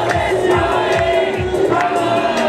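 Live idol pop music played over a sound system, with a steady beat and a woman singing into a microphone, while a crowd of fans shouts along.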